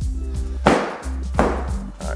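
Two sharp slaps about three-quarters of a second apart as foam exercise mats are dropped onto the rubber gym floor, over background music.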